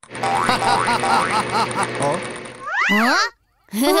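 Cartoon sound effects: a quick run of bouncy, chirping blips, about four a second, over a steady high tone. Then a springy boing slides up and down about three seconds in and cuts off, and a cartoon voice calls "О!" at the very end.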